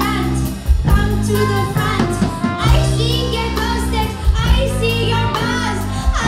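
Live band playing: a lead vocal sung over electric guitar and a drum kit, with a steady low bass line and regular drum hits.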